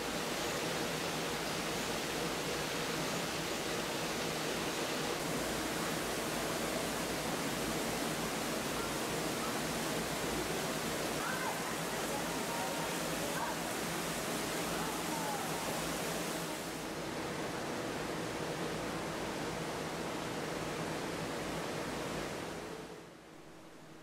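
Steady rushing hiss of a large tropical greenhouse's background noise, with a faint low hum running under it. The hiss thins slightly about two-thirds of the way through and fades out near the end.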